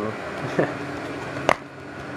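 A single sharp plastic click about one and a half seconds in: a DVD case snapping open. Under it runs a low steady hum.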